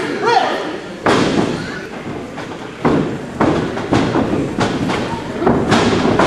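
A series of sharp thuds on a wrestling ring's canvas-covered boards as wrestlers step, stomp and hit the mat, the loudest about a second in and another near three seconds.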